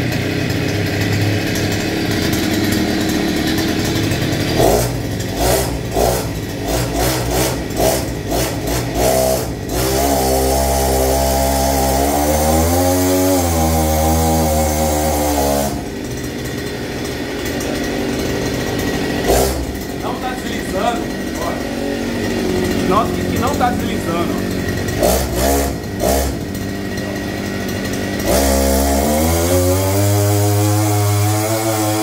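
Small two-stroke brushcutter engine, mounted on a bicycle with its drive shaft pressed against the rear tyre as a friction drive, running while being tested for slip. The throttle is worked up and down, with a long rev rising and falling about a third of the way in and another rev starting near the end.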